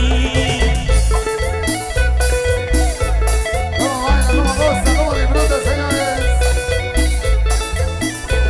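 Live band playing upbeat Latin dance music with a steady beat and heavy bass.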